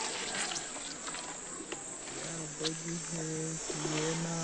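Insects chirring steadily in a high, even band. About two seconds in, a low voice comes in with long held notes.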